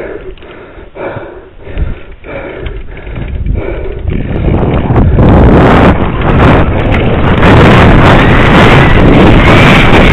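Wind rushing over a helmet-camera microphone on a downhill mountain bike run, mixed with the knocks and rattle of the bike over rough trail. The first few seconds are a scatter of separate knocks; about four seconds in the wind rush builds up loud with speed and stays.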